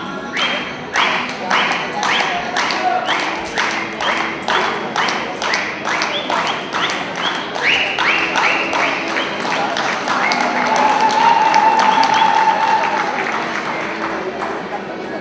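Audience clapping in rhythm, about two claps a second, in a reverberant hall. The beat quickens, and a little after halfway it breaks into louder general applause and cheering with a held shout over it.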